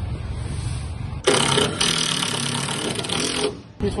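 Push brooms sweeping a concrete sidewalk. About a second in, a loud rasping scrape starts, runs for about two seconds, and stops abruptly.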